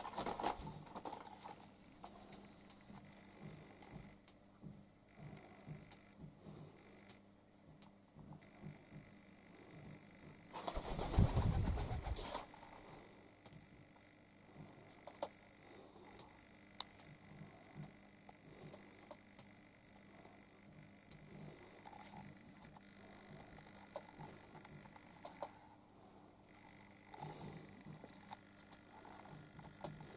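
Pigeons cooing softly at a low level. About eleven seconds in comes a louder rustling burst of about two seconds.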